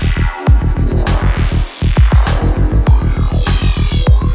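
Psychill electronic music: a fast, rolling, throbbing bassline pulses under layered synths, dropping out for a moment twice before coming back in.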